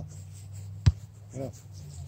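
A single sharp touch of a soccer ball against a player's foot on grass, about a second in.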